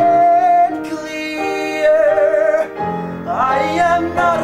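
A man singing long held high notes, the second wavering with vibrato, over sustained piano chords; a new sung phrase rises in near the end.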